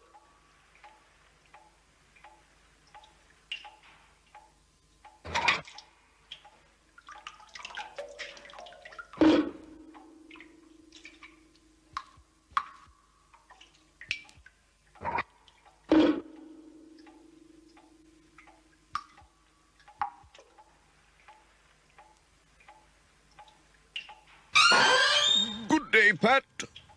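Rainwater dripping from a leaking roof into metal buckets on a stone floor: a faint, steady drip about twice a second, with a few louder plinks into the pails, two of which ring briefly. A voice comes in near the end.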